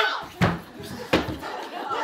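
Two heavy thumps about three-quarters of a second apart as a man throws himself down onto the stage floor.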